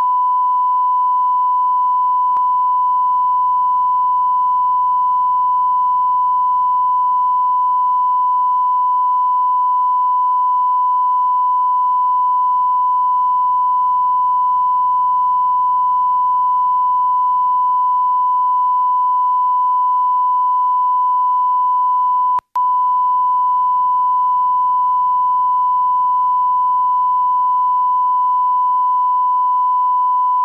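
Steady reference test tone played with colour bars at the head of a broadcast videotape, one unbroken pure pitch that cuts out for a split second about 22 seconds in.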